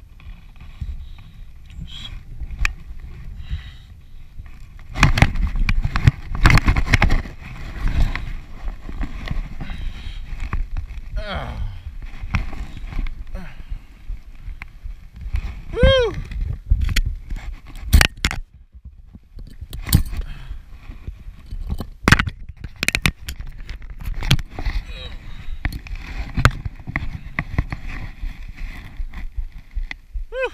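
Wind buffeting and rustling on a paratrooper's body-mounted camera during the last of an MC-6 parachute descent, then a cluster of loud thuds and scraping from about five seconds in as he lands. Afterwards come the rustle and knocks of gear and canopy on the ground, with a few short calls from voices.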